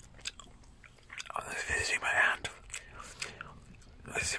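Close-miked gum chewing: wet mouth clicks and smacks several times a second, with a breathy whisper lasting about a second starting a little over a second in.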